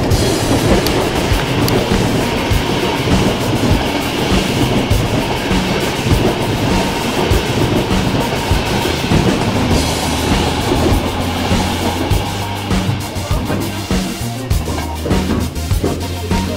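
Passenger train coaches rolling past over station points, their wheels clattering, loudest for the first ten seconds or so, mixed with background music with a steady bass beat.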